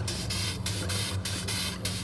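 Steam from the boat's compound steam engine hissing out of a hull outlet at the waterline in regular puffs, about two a second, over a steady low hum.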